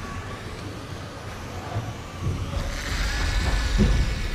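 Siku Control 32 John Deere RC model tractor driving, with a vehicle-like running sound that grows louder over the last second and a half, with a few knocks near the end.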